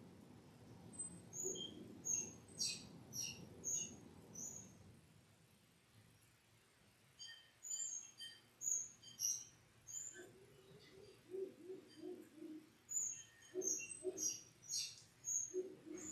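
Faint chirping of small birds in short runs of quick, high notes, with a series of short, lower notes near the end.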